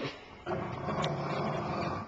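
Dog growling in a low, continuous rumble during a tug-of-war over a plush toy, starting about half a second in.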